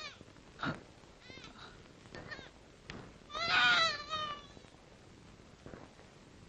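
High-pitched wailing cries: a few short, faint ones, then a louder, drawn-out cry lasting about a second, starting about three and a half seconds in.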